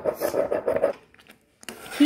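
Marble pestle grinding wet saffron in a marble mortar (kharal): stone scraping and rubbing on stone in quick strokes. It stops suddenly about a second in.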